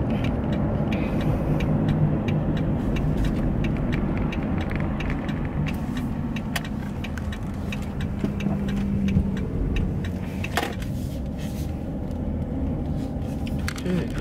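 Steady engine hum and road rumble heard from inside a car's cabin while it is driven.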